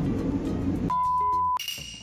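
Background store noise, then about a second in a single steady electronic beep lasting just over half a second, followed by a bright ringing chime that fades away: added editing sound effects at a scene change.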